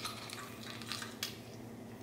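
A lime half being crushed in an OXO hand-held metal citrus squeezer: a faint squish of the fruit with a few light clicks from the squeezer.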